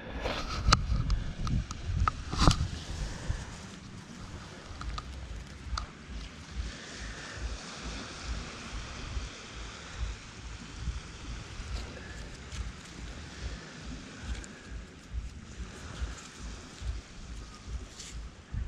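Wind buffeting the microphone in a steady low rumble, with a few sharp knocks and rustles in the first three seconds as a found earbud headset is picked up and handled.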